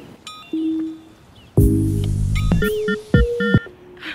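Background music: a melody of held, stepping notes with a deep bass hit about one and a half seconds in and two sharp hits near the end.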